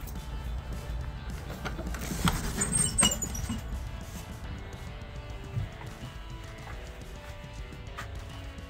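Background music, with sharp metallic clinks and clicks between about two and three seconds in from a shed door's padlock and latch being undone as the wooden door is opened.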